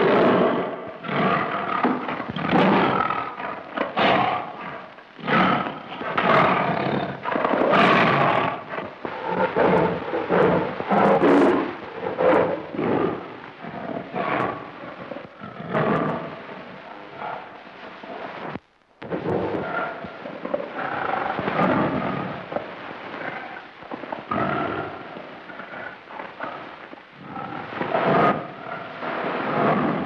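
Tiger roaring and snarling over and over in a fight, in loud, rough bursts, with a short break a little past the middle.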